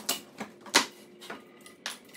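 Wooden shims being set and pressed under a twisted board on a plywood planer sled: about five light, sharp wooden knocks, the loudest near the middle.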